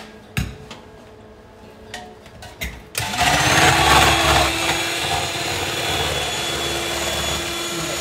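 A few clicks and knocks, then about three seconds in an electric hand mixer switches on, spins up and runs steadily as its beaters whip cream in a stainless steel bowl.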